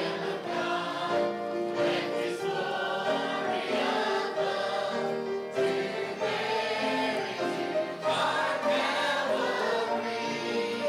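Congregation of men, women and children singing a hymn together, accompanied by a strummed acoustic guitar.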